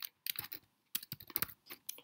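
Typing on a computer keyboard: a quick run of key clicks as a short word is typed.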